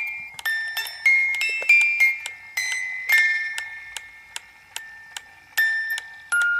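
Music: a slow, high, bell-like melody of single struck notes, each ringing and fading, about one or two a second, thinning out in the middle before picking up near the end.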